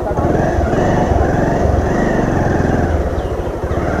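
Motorcycle engine running steadily with an even, rapid firing pulse as the bike is ridden along a street.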